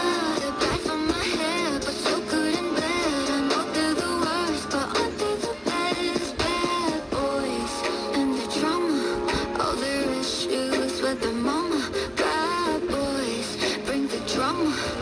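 Music with a singing voice, received from an FM station on a portable AM/FM/shortwave radio tuned to 93.1 MHz.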